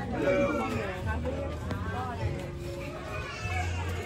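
Crowd chatter: several voices talking at once over background music with a steady, low bass line.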